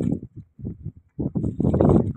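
Soft, irregular knocks and rustles, several a second, of wet catfish being shifted by hand on a woven plastic sack, growing denser in the second half.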